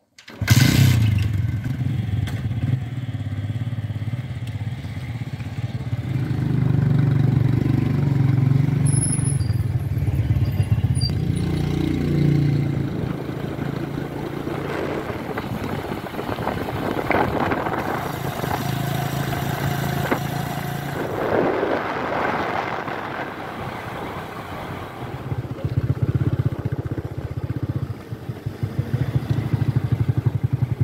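TVS Radeon 110 cc single-cylinder four-stroke motorcycle engine running as the bike is ridden, its pitch and loudness rising and falling with the throttle, with wind noise over it.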